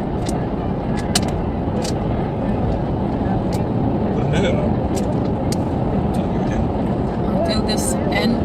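Steady road and engine noise heard inside the cabin of a car driving along a highway, with scattered faint clicks.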